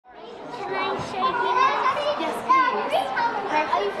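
A group of young children talking over one another, their high voices overlapping, fading in over the first half second.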